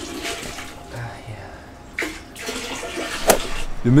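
Water poured by hand from a plastic bucket into a toilet bowl to flush it. The pouring fades out about halfway through, and a short sharp sound follows.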